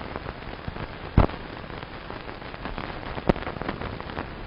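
Crackling hiss of an old film soundtrack, with two sharp pops, about a second in and near the end.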